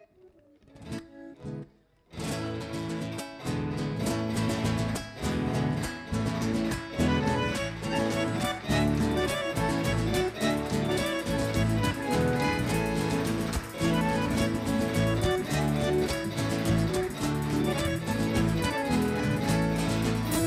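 Live Argentine folk band starting a chaya, the carnival dance rhythm, after a few sharp clicks: acoustic guitars, accordion and drums come in together about two seconds in and play on with a steady beat.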